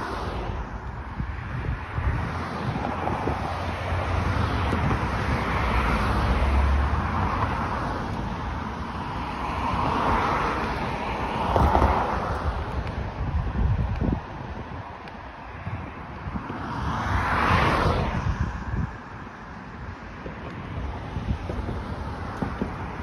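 Road traffic on a busy multi-lane street: cars passing one after another, the loudest swells about halfway through and again near the end, with wind rumbling on the microphone.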